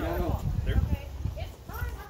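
Voices talking faintly in the background over irregular low thumps.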